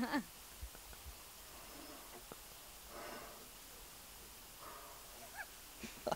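Faint, breathy blowing into a didgeridoo that gives no proper drone, only a couple of weak puffs about three seconds in and near the end: a failed attempt to play it, a "silent concert".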